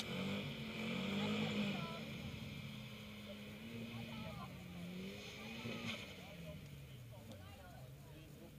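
Distant drag-racing car engines running at the start line, the engine note rising and dipping in pitch with the revs and fading toward the end, with crowd chatter over it.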